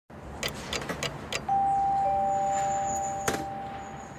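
A few light clicks, then a two-note chime: a higher tone followed about half a second later by a lower one, both ringing on and slowly fading. Another click sounds near the end.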